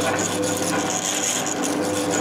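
MZ-400E3K semi-automatic capping machine running its capping cycle: the electric motor and spinning capping head whirr steadily with a grinding rasp as the rollers roll a metal cap onto a glass bottle.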